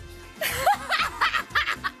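A woman breaking into laughter about half a second in, in short repeated bursts, over background music.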